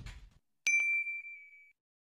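A notification-bell sound effect: one bright ding a little over half a second in, ringing for about a second before dying away. Before it, the tail of the trailer music fades out.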